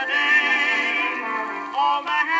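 Male vocal quartet singing in close harmony on an early-1920s acoustic-era record, holding a chord with vibrato before a new phrase begins near the end. The sound is thin and boxy, with no deep bass and no high treble.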